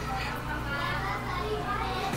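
Faint background voices over a steady low hum.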